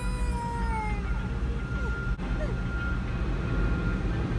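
Low, steady rumble of an idling car heard from inside its cabin, with a thin steady high tone over it. During the first second a drawn-out high, slightly falling vocal sound rises above it.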